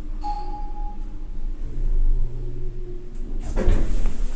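Mitsubishi passenger elevator arriving: a single chime tone about a quarter second in, then a low hum, and the landing doors sliding open with a loud rumble near the end.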